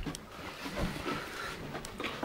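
Faint rustling and handling noise, with a few small scattered clicks and knocks.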